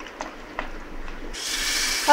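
A spoon stirring thick semolina batter in a bowl, with a few light clicks. About a second and a half in, a steady sizzling hiss starts: batter frying in a hot, oiled appe pan.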